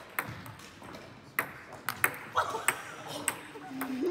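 Table tennis ball being hit back and forth in a rally: sharp, hollow clicks of the celluloid ball on the bats and the table, coming at uneven intervals of about half a second to a second.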